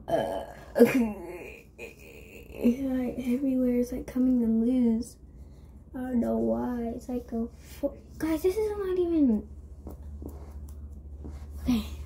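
A girl's voice singing a tune without clear words in three short phrases of held notes, after one or two short sharp vocal sounds in the first second.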